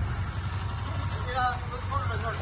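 Voices of several people talking a short way off, over a steady low rumble.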